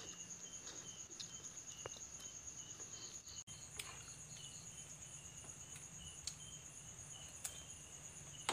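Crickets chirping: a steady high trill with a lower chirp repeating evenly a few times a second, faint throughout. A few soft clicks stand out here and there.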